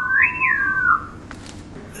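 Visual-to-auditory sensory substitution soundscape of a nose outline: a whistle-like electronic tone sweeps through the image over about a second, gliding up to a peak and back down over a lower steady tone, so that pitch traces the nose's shape.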